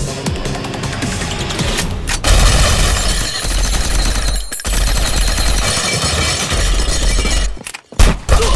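Action-film soundtrack: an electronic score, then about two seconds in a sudden, loud stretch of rapid automatic gunfire with a heavy low rumble laid over the music. It drops out for a moment midway and cuts off abruptly just before the end.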